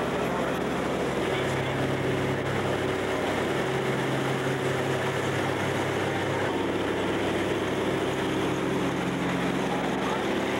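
Steady, loud drone of a propeller jump plane's engines heard from inside its bare metal cabin, with a constant low hum.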